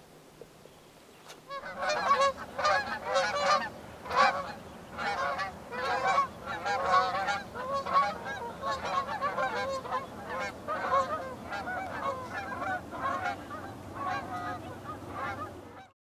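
A flock of geese honking in flight, many short overlapping calls starting about a second and a half in, loudest early and slowly fading as the flock passes.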